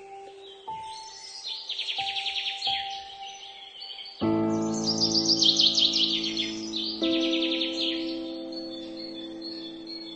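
Slow, soft piano notes with birdsong mixed in: bursts of rapid, high chirping trills come and go over the music. About four seconds in, a fuller, louder held chord enters.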